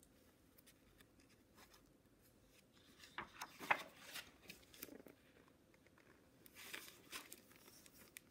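A page of a large hardcover picture book turned by hand: a short paper rustle and flap about three to four seconds in, then a quieter rustle near the end as the page settles and is handled flat.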